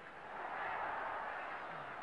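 Stadium crowd noise swelling about half a second in and easing off near the end.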